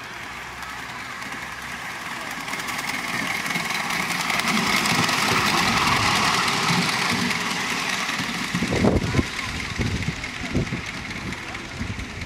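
Miniature live-steam locomotive, a model Midland Compound, running past with its trolley. The rushing noise of steam and wheels on the rails swells to a peak about halfway through, then eases off as it moves away. Low, irregular bumps follow in the last few seconds.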